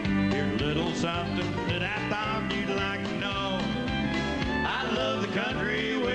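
Live country band playing a country song on acoustic and electric guitars, with a man singing.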